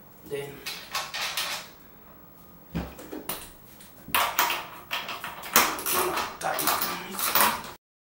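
A ratchet wrench with a 22 mm socket tightens an electric scooter's rear axle nut, making a run of repeated ratcheting strokes from about four seconds in. Before that come handling knocks from the wheel, with one sharp knock near three seconds. The sound cuts off suddenly just before the end.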